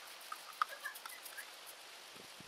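Faint, scattered light ticks and a few tiny chirps, mostly in the first second.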